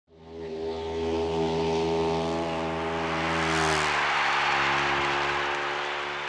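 Speedway motorcycle engine running hard at steady high revs, fading in at the start, its pitch dropping slightly about four seconds in.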